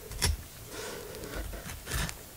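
Knife cutting into a fish's flesh, with a sharp click shortly after the start and a weaker one near the end.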